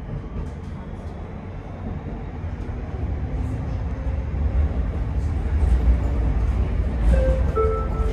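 Low rumble of a tram's wheels and running gear heard from inside the passenger cabin, growing louder over several seconds as the tram picks up speed. A few short, steady tones sound near the end.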